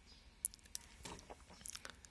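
Faint scattered clicks and crinkly rustles over a quiet background, the sharpest click about half a second in: handling noise as the radio is lowered and the view shifts to the laptop.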